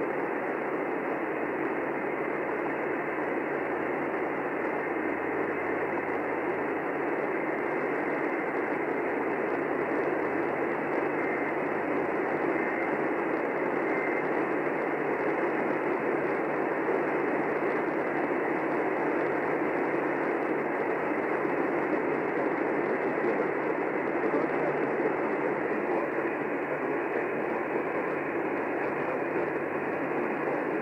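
AM radio reception with no programme audible, just a steady hiss of static.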